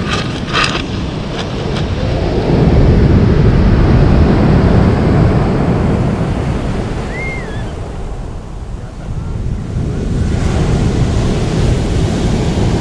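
Pacific Ocean surf breaking on a pebble beach, with wind on the microphone. A wave swells loudest a few seconds in, eases off, then rises again near the end.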